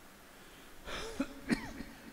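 A man clearing his throat with a short cough close to a microphone, starting about a second in, with a couple of short sharp catches.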